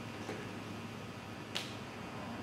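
Quiet room tone with one short, sharp click about one and a half seconds in.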